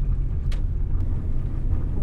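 Steady low rumble of a car driving, heard from inside the cabin, with one short click about half a second in.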